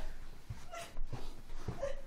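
A person's short whimpering squeals, with duvet rustling and a few soft thumps on the bed.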